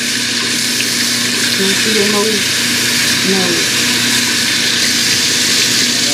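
Tap water running steadily into a sink during hand washing, played back over a hall's loudspeakers.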